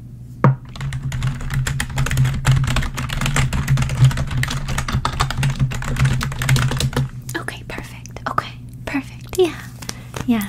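Computer keyboard being typed on in quick runs of key clicks, entering a name at check-in. The typing thins out after about seven seconds.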